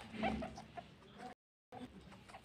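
Guinea pigs making short, soft clucking sounds. A person's laugh trails off at the start, and the sound cuts out briefly about a second and a half in.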